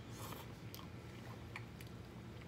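Faint, close-up mouth sounds of people chewing tender beef rib meat, with a few light clicks.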